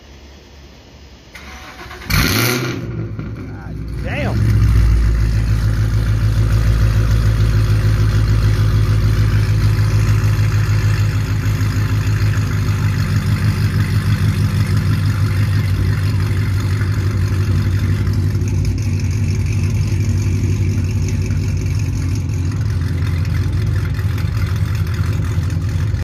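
Sixth-generation Chevrolet Camaro V8 with long-tube headers starting up: a sudden burst as it cranks and catches about two seconds in, a rise in revs a couple of seconds later, then a steady, pulsing idle.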